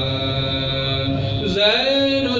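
Male voice chanting soz, the unaccompanied melodic recitation of a Karbala elegy, holding a long steady note that then glides upward about one and a half seconds in.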